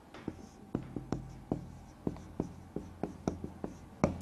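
Dry-erase marker writing on a whiteboard: a run of short, irregular strokes and taps over a low steady hum.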